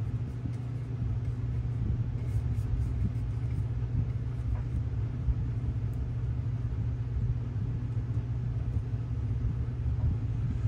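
A steady low rumble in the background, with a few faint light ticks about two to three seconds in.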